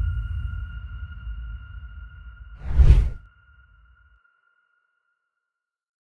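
A deep low note with a faint high sustained tone fading away, then a single loud whoosh sound effect about three seconds in.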